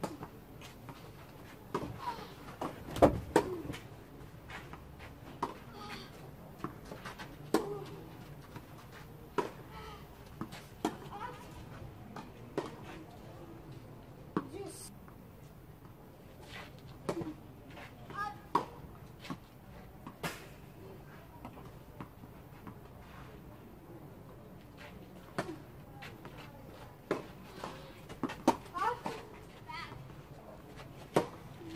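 Tennis balls struck by rackets and bouncing on a clay court during serves and rallies: sharp single hits every second or two, the loudest about three seconds in. Voices come in between the shots.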